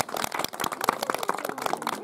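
Audience clapping, many quick irregular claps, as applause at the end of a song.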